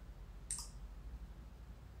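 A single short, sharp click about half a second in, over a faint steady low hum.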